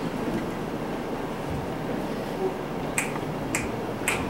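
Steady room noise, then two sharp finger snaps about half a second apart near the end, keeping an even beat that counts in a song.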